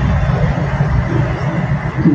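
Cloth rustling and handling noise close to a phone's microphone as a sheer voile dupatta and lawn fabric are held up and moved, a loud steady rustle with a heavy low rumble.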